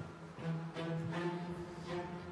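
Background music: steady held low notes of a tense underscore, with no speech.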